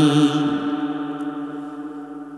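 A man's singing voice holding one long, steady note at the end of a line of a Bangla ghazal, fading gradually away.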